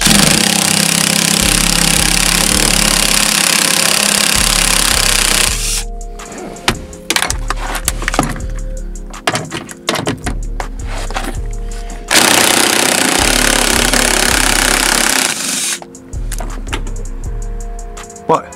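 Cordless impact driver with a socket hammering on a seat-mounting bolt in two long runs: about five and a half seconds from the start and about three seconds a little past the middle. Scattered clanks and rattles come between the runs.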